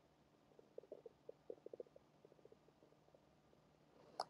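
Near silence: room tone, with a faint, irregular run of short low clicks or gurgles from about half a second to three seconds in.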